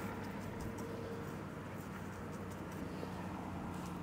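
Faint scratchy strokes of a paintbrush's bristles on a painting panel, over a steady low background rumble.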